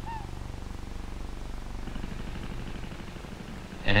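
Steady low hum with a fast flutter, from the old film's optical soundtrack.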